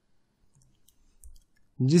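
A few faint, sharp clicks in a near-silent pause. A man's speaking voice starts just before the end.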